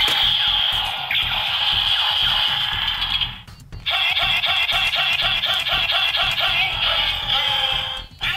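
Power Rangers Ninja Force toy blaster playing electronic sound effects and music through its small speaker. A sustained effect runs for about three seconds, stops briefly, then a rhythmic jingle follows at about three beats a second.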